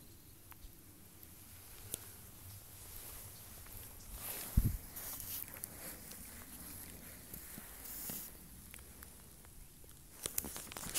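Quiet footsteps and light rustling through long grass, with a single dull thump about halfway through.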